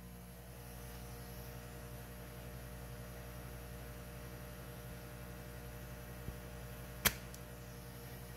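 Steady electrical hum, then a single sharp click about seven seconds in: a spring-loaded solder sucker firing to pull molten solder off a solenoid's wire terminal.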